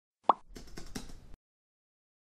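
Intro animation sound effect: a short, loud pop with a quick upward rise about a quarter second in, then about a second of softer noise with a few clicks that cuts off suddenly.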